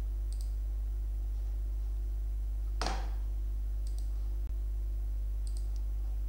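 Computer mouse clicks, short double clicks a few times, over a steady low electrical hum. One louder brief noise comes a little under three seconds in.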